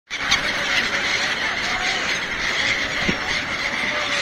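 A large flock of gulls calling all at once: a dense, continuous chorus of overlapping high squealing cries.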